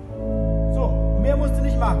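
Organ sounding a new held chord over a deep sustained bass note, entering just after a brief dip and staying steady. A man's voice talks over it from a bit under a second in.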